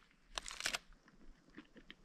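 Aluminium foil crinkling as it is folded back from around a sandwich in the hand: a few short crinkles about half a second in, then only faint small rustles.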